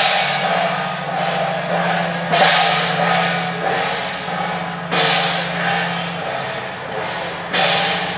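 Chinese processional percussion: a loud cymbal crash about every two and a half seconds, four in all, each ringing on, with lighter drum and cymbal beats between, over a steady low drone.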